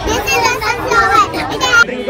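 Young children's voices talking loudly, several at once.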